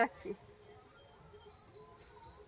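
A small bird singing a quick run of about eight high, descending notes, roughly five a second, starting about half a second in.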